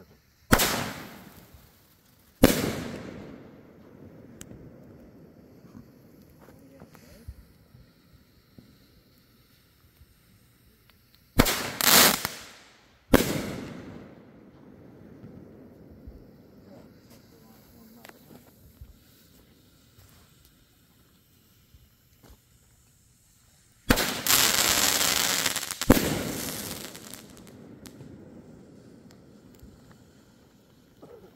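Fireworks going off: a sharp bang, then a second soon after, each trailing off in a long rolling echo; two more bangs midway; and near the end a dense burst of about two seconds, closed by one more bang.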